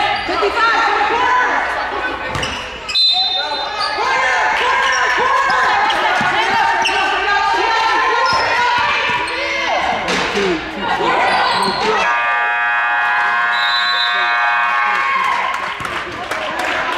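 Basketball bouncing on a hardwood gym floor, with sneaker squeaks and players' voices. About twelve seconds in, a scoreboard horn sounds a steady tone for about three and a half seconds as the game clock runs out, ending the period.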